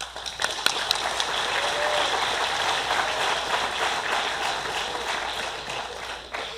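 Audience applauding, starting suddenly and dying down near the end.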